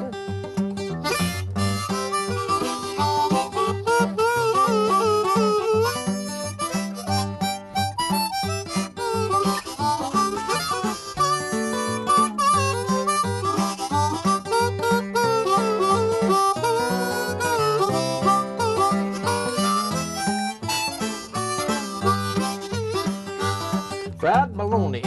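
Diatonic harmonica playing an instrumental break in a country tune, with bending, sliding notes. An acoustic guitar keeps up the accompaniment underneath.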